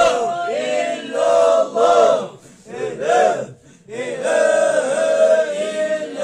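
Men's voices chanting a Sufi zikir together, in short rhythmic sung phrases. The chant drops away briefly twice around the middle.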